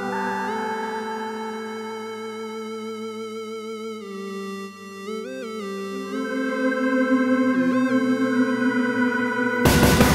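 Electronic synthesizer track made in Korg Gadget. Held organ-like synth chords waver slightly and bend quickly in pitch twice in the middle, and a drum beat comes back in near the end.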